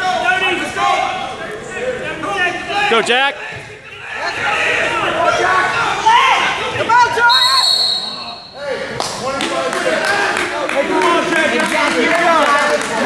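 Mixed voices of spectators and coaches echoing in a large gym. A referee's whistle sounds for about a second, some seven seconds in, stopping the action, and short thuds follow near the end.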